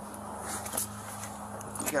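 Faint rustling and a few soft clicks as a man climbs out of a car's driver seat, over a steady low hum, picked up by a police body camera. A man's voice starts at the very end.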